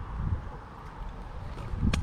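Wind buffeting the microphone, a low rumble, with a short sharp click near the end.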